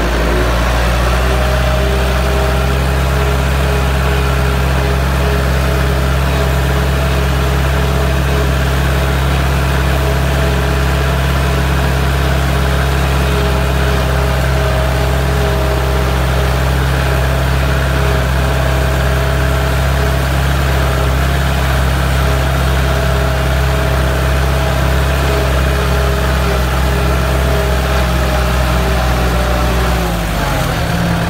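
Kubota tractor's diesel engine running steadily at an even speed as the tractor drives through a wet rice paddy.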